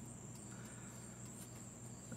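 Faint, steady high-pitched chorus of insects chirping, with a low hum underneath.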